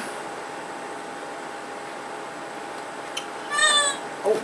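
One short, high-pitched, meow-like call near the end, dipping slightly in pitch, after a small click, over a steady faint background hum.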